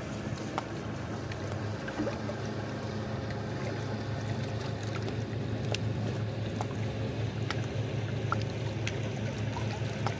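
Small lake waves lapping and splashing against shoreline rocks, with the steady low drone of a pontoon boat's outboard motor cruising past.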